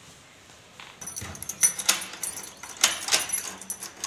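A newly fitted lever-handle door lock being worked by hand: a run of sharp metallic clicks and rattles from the latch, handle and lock hardware, starting about a second in.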